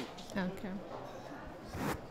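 Brief, quiet speech into a microphone, with a short rasping rustle near the end.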